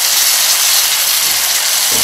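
Skin-on chicken thighs and legs frying in oil in a stainless steel pot, a steady sizzle.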